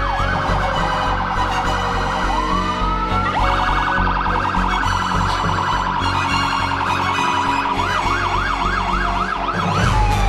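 Fire apparatus electronic siren cycling through its tones: a fast yelp sweeping up and down about three times a second, then a rapid warble, a rising wail about two seconds in, the warble again, and the yelp returning near the end.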